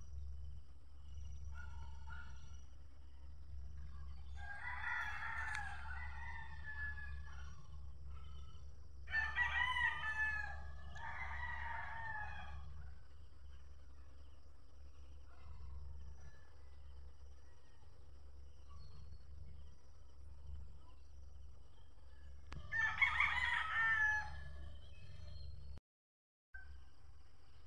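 A rooster crowing three times: a call about four seconds in, a longer one about nine seconds in, and another near the end, over a steady low rumble.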